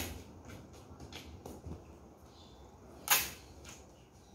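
Brown packing tape being pulled off its roll and stuck onto a cardboard box: a sharp snap at the start, a few small crackles, and a loud short rip about three seconds in.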